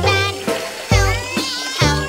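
Children's song: a sung line ("My hand is hurting bad… help me, help me, I'm so sad") over backing music with a steady bass beat.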